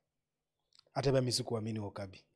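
Silence for almost a second, then a man speaking in a small room.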